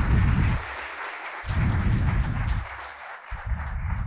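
An auditorium audience applauding steadily. A low swell sounds underneath three times, each lasting about a second.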